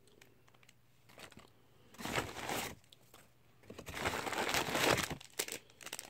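A brown paper lunch bag crinkling and rustling as a hand rummages in it, in two bursts about two seconds in and from about four to five seconds, with light crackles between.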